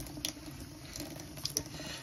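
Thin stream of tap water running into a sink while lathered hands rub together, with faint wet squishing and small ticks.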